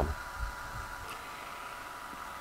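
Faint, steady hum and hiss of background machinery, with one constant high tone running through it.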